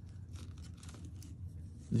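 Faint scattered clicks and rustling as hands handle the small gauge pieces of a thread checker's metric stringer, strung on a wire loop.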